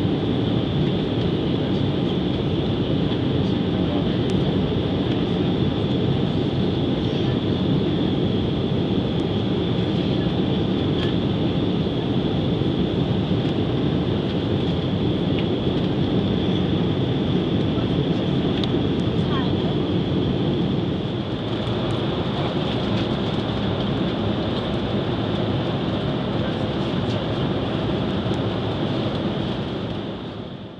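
Steady cabin noise of a jet airliner in climb: the engines and airflow make a constant loud rush with a thin high whine running over it. The level drops a little about two-thirds of the way through.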